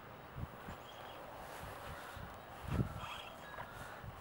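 Quiet outdoor background with a few faint soft knocks and rustles from hands threading a thin cord through an antenna ground stake, the clearest knock a little before the end.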